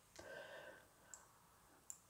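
Near silence, with a brief faint sound a quarter of a second in and two tiny clicks, one about halfway through and one just before the end.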